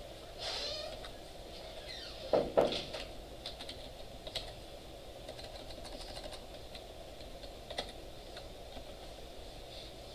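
Computer keyboard typing in scattered, irregular keystrokes, with a louder double knock about two and a half seconds in.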